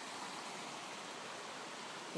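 Small rocky stream flowing, a steady rush of running water.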